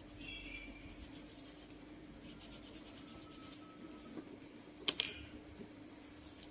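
Faint scratching and rubbing on a desk, over a low steady hum, then two sharp clicks close together about five seconds in.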